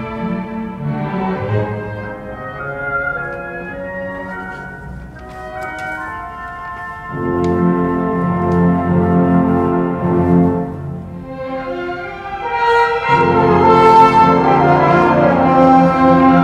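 Symphony orchestra playing sustained chords, strings with brass, growing louder about seven seconds in, easing briefly, then swelling to its loudest near the end.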